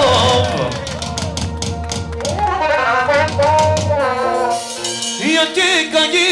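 Live band music: an ornamented, wavering melody line over rapid drum strokes; the melody drops out about a second in, leaving mostly the drumming, and a new melodic phrase comes in a little after five seconds.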